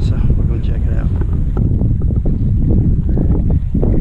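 Wind buffeting the camera microphone, a loud, steady low rumble, with faint voices in the first second or so.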